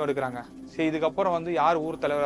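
A man speaking in Tamil: close, steady narration with a short pause a little way in.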